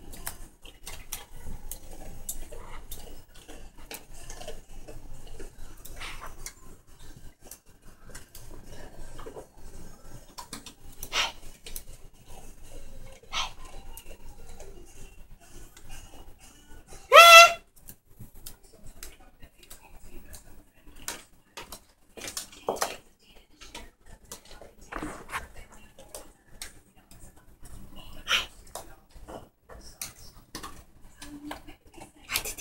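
A cockatoo's claws and beak clicking and tapping on a tile floor as it hops and scuttles about, with one loud squawk about halfway through and a few fainter short calls.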